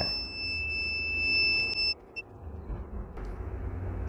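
Luminous home inverter's low-battery alarm: a steady high-pitched whistle that cuts off suddenly about two seconds in as the inverter shuts down on a run-down battery, followed by one short chirp. A low hum runs underneath.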